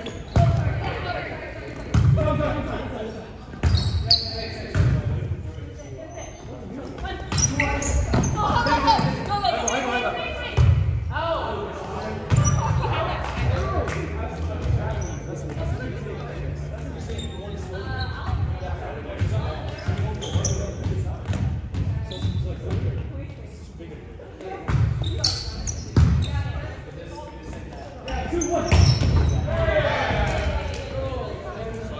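Indoor volleyball being played: irregular thuds of the ball struck by players' forearms and hands and bouncing on the hardwood gym floor, echoing in a large hall.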